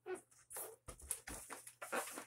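Latex heart balloon being handled, the rubber rubbing and squeaking under the fingers in short irregular bursts, with a couple of soft low bumps against the balloon.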